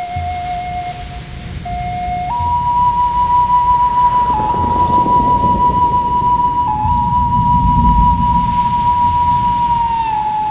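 Native American flute playing long held notes: a lower note steps up to a higher one about two seconds in and is sustained, broken by brief grace-note flicks, over a low swelling accompaniment.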